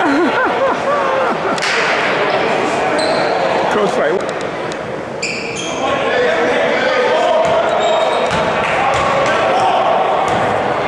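Crowd voices and shouting echoing in a school gym during a basketball game, with a basketball bouncing on the hardwood floor and a few short high squeaks around the middle.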